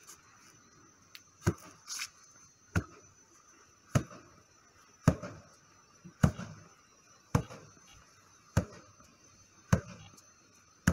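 Left roundhouse kicks landing on a handheld kick shield: a sharp smack about every second and a quarter, with a lighter extra hit shortly after the first.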